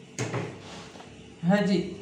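A single short knock about a fifth of a second in, fading quickly, from something being handled on the table; a woman starts speaking near the end.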